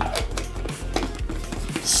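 Low background music with a few light clicks and knocks scattered through it, from a plastic shaker cup and its lid being handled.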